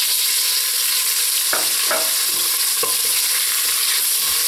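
Diced chicken breast sizzling steadily in hot oil in a stainless steel pot as it starts to brown, with a few short scrapes of a spatula against the pot as the pieces are stirred.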